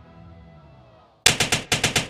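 A sustained pitched drone, then about a second in a rapid volley of about six loud bangs in under a second, like automatic gunfire, which stops abruptly.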